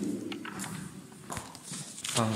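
A few soft, irregular clicks and knocks over low room noise.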